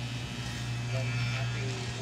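Electric hair clipper buzzing steadily as its blade cuts short hair at the nape of the neck.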